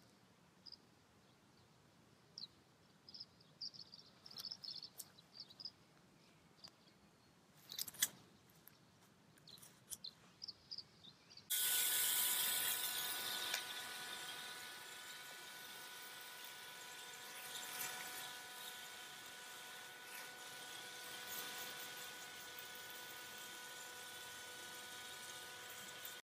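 Faint bird chirps over a quiet background, then about halfway through a garden hose spray nozzle starts suddenly with a steady hiss of water spraying onto bare soil, with a faint steady whistle under the hiss.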